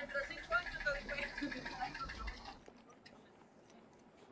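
Faint voices of people talking at a distance for the first two and a half seconds, then quieter, with a few faint ticks.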